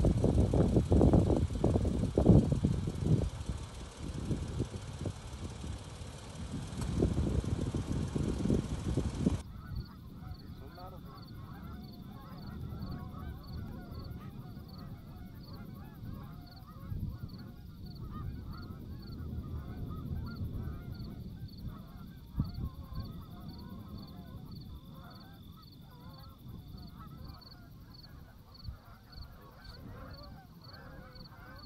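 Wind buffeting the microphone for the first nine seconds or so. Then, after a sudden change, a flock of Canada geese honking in the distance, with a high, regular pulsing chirp in the background.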